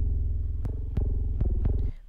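FL Studio's BooBass plugin, a bass-guitar-style synth, playing low bass notes from a MIDI keyboard. A held note is struck again a few times and cuts off just before the end.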